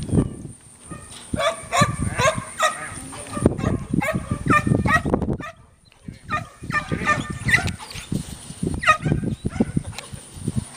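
Border collie cow dog barking in quick runs of short barks, with a pause about halfway through.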